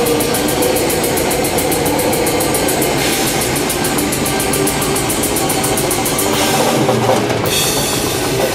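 Drum kit played fast and hard in a live heavy metal performance, with evenly spaced strokes over the band's sound. The fast pattern breaks off for about a second shortly before the end.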